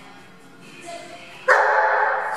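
A dog barking loudly, starting suddenly about one and a half seconds in, over faint background music.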